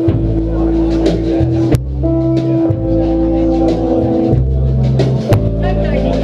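Live indie folk-rock band playing: electric guitar, acoustic guitar, upright bass and drum kit, with long held notes over the bass and scattered drum hits.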